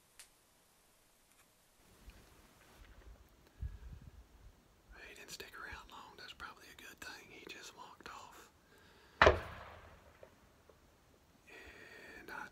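A single rifle shot about nine seconds in, a sudden sharp crack with a short echoing tail, fired by another hunter rather than the one in the blind.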